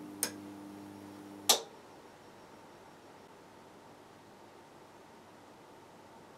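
Camera being handled: a couple of light clicks over a low steady hum, then one sharp click about a second and a half in, after which the hum stops and only faint hiss remains.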